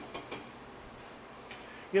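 Three quick, light clinks of a spoon against a metal saucepan, then quiet kitchen room tone with one faint tick.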